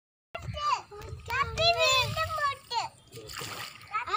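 Children's high voices chattering excitedly, with an oar splashing in the river water shortly before the end.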